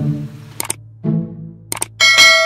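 Subscribe-button end-screen sound effect: short low musical tones with two sharp mouse-click sounds, about half a second in and near the end.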